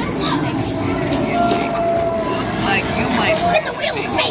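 Arcade din: background chatter of many people mixed with the tones and jingles of game machines, with a few held tones.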